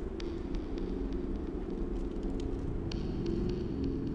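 A low, steady hum with faint high ticks scattered over it.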